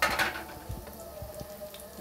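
Chopped hot green chili peppers sizzling in hot oil in a frying pan: a burst of sizzle right at the start fades within about half a second to a low, steady crackle.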